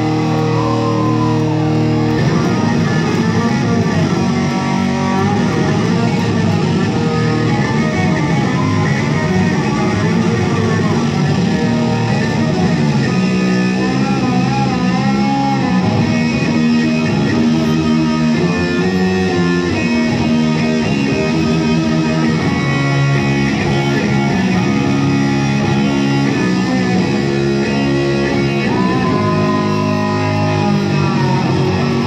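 Amplified electric guitar solo played live, a continuous run of notes with bent notes gliding up and down in pitch.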